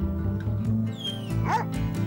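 Music that starts suddenly, with a dog giving a short, high whimper that bends up and down about a second and a half in.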